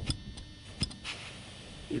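Air hissing faintly out of an inflatable canoe's Boston valve as the pressure gauge seated in it is lifted slightly, letting the side chamber deflate; the hiss starts about halfway through, after two light clicks of the gauge being handled.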